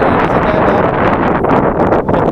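Wind buffeting the microphone: a loud, steady rumbling roar.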